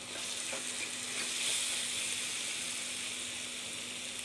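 Chopped onion, tomato, ginger and garlic masala sizzling steadily in groundnut oil in an aluminium kadai, with a few light scrapes of a wooden spatula as turmeric is stirred in.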